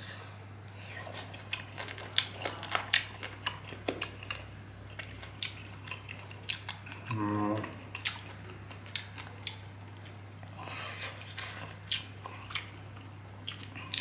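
Close-miked chewing of a mouthful of boiled pork ear and rice, with many small, crisp crunching clicks scattered through the mouthful.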